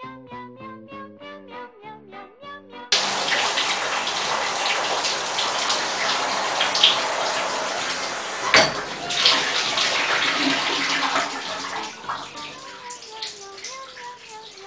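Shower spray running in a tiled bathtub: a loud, steady rush of water that starts abruptly about three seconds in and dies away about two seconds before the end, with one sharp knock partway through. Light music with a bouncy melody plays alone at the start and end and carries on faintly under the water.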